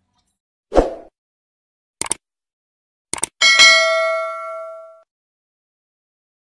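Subscribe-button animation sound effects: a soft thump, then two quick double clicks like a mouse button, then a bright notification-bell ding that rings for about a second and a half and fades out.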